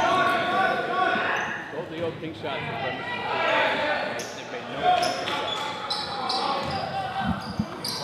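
Basketball game sounds in a gym: a ball bouncing on the hardwood court, with scattered voices of players and spectators in the hall. There are a few short, high squeaks and some knocks near the end.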